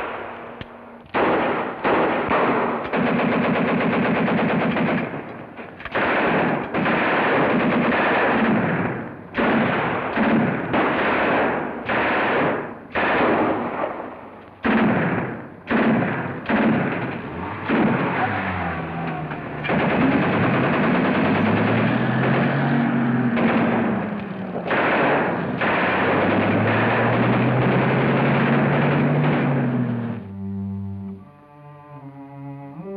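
Automatic gunfire in repeated long bursts of one to three seconds, machine guns and a submachine gun firing back and forth. In the second half a low engine note rises and falls beneath the shooting.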